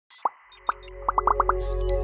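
Intro jingle sound effects: a string of about eight quick pops, coming faster after about a second, over a low electronic swell that grows louder.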